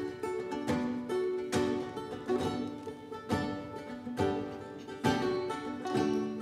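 Banjo and acoustic guitar playing a plucked instrumental introduction, with strong picked accents a little under once a second and notes ringing on between them.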